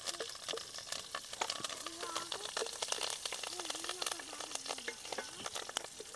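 Garlic cloves, dal and leaves sizzling and crackling steadily in hot oil in an aluminium pot as a wooden spatula stirs them.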